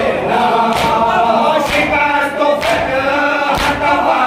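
A group of men chanting a Shia mourning lament (noha) in unison, with rhythmic chest-beating (matam) thumps landing about once a second.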